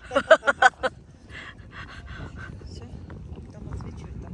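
A person's voice in a quick run of short bursts, then fainter voices, with wind on the microphone.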